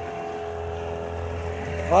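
Small outboard motor running at a steady speed, a constant drone with a low hum.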